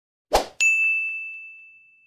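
Sound effect for an animated like button: a short hit, then a single bright ding that rings out and fades over about a second and a half.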